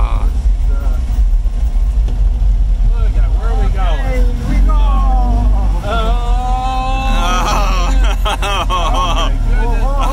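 Small vintage Fiat's two-cylinder engine running, heard from inside the cabin as a steady low drone, with a person's voice over it from about three seconds in.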